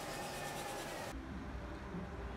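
A steady hiss of room tone with a faint constant hum, cut off abruptly about a second in and replaced by the low rumble of street traffic.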